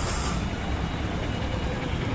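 Outdoor street ambience: a steady low rumble with no distinct events.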